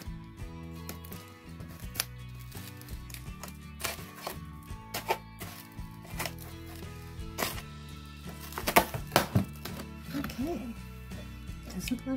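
Soft background music with held chords, over scattered knocks, taps and scrapes of a cardboard box being handled and opened, with a cluster of sharper knocks about nine seconds in.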